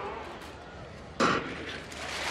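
Starting gun for a 100 m sprint fired once, a sharp crack about a second in, over a quiet stadium hush.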